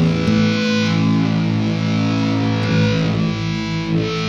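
Live band's distorted electric guitars holding one chord and letting it ring at the close of the song, with no singing over it.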